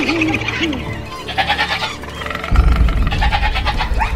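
Animal calls, among them a goat bleating in quick pulses a second or so in, over a film score whose deep drone swells in about halfway through.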